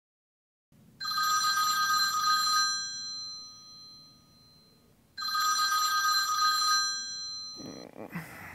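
Telephone ringing twice, each ring about a second and a half long with a lingering fade, the second starting some four seconds after the first.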